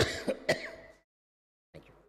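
A man clearing his throat and coughing into a lectern microphone: three quick harsh bursts in the first half second that die away by about a second in, then a fainter short sound near the end.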